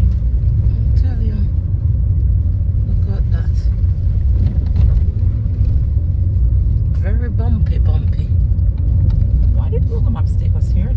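Inside a car driving slowly along a narrow country lane: a steady low rumble of engine and tyres, with quiet talking a few times.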